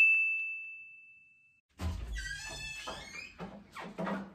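A single bright, bell-like chime (a ding) that rings and fades away over about a second and a half, an intro sound effect. From about two seconds in, fainter room noise with light knocks follows.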